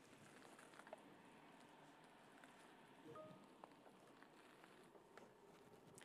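Near silence: faint room tone with a few faint ticks and a brief faint tone about three seconds in.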